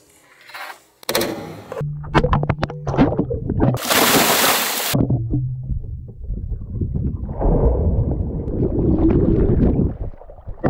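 Water splashing as a swimmer goes in beside the hull, then muffled underwater sloshing and rushing picked up by a camera held below the surface. A loud hissing splash comes about four seconds in.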